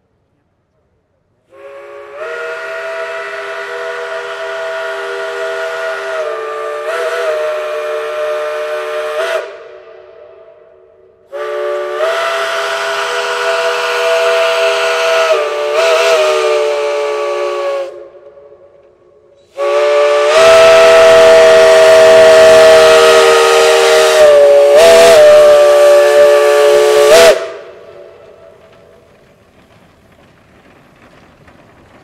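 Steam whistle of a Shay geared steam locomotive, Cass Scenic Railroad No. 5, blown in three long blasts of several notes at once, each wavering briefly near its end. The third blast is the loudest.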